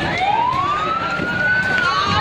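Emergency vehicle siren wailing: a slow rise in pitch over about a second and a half that peaks near the end and starts to fall again.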